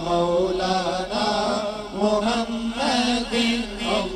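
Punjabi naat sung by male voices without words clear enough to catch: a moving sung melody over a steady held note from backing voices.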